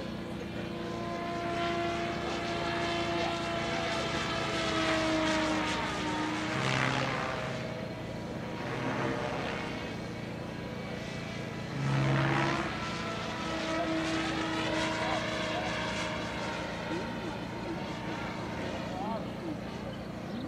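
JR radio-controlled F3C aerobatic helicopter flying overhead: a steady engine-and-rotor tone whose pitch shifts as it manoeuvres. It swells twice, about a third and about two-thirds of the way through, the second time loudest.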